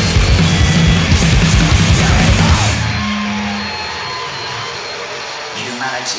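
Loud hardcore punk song with distorted guitar, bass and drums, which stops about three seconds in and leaves a briefly held low note and a fading wash of noise as the track ends.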